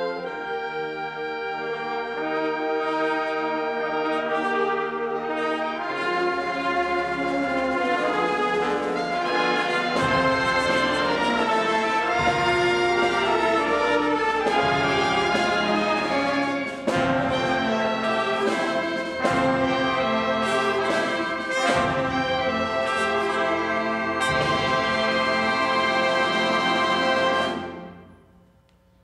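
Concert band of brass, woodwinds and percussion playing a lively piece; the sound gets fuller about six seconds in, with sharp accented strikes from about ten seconds on, and the piece ends on a final chord right at the end.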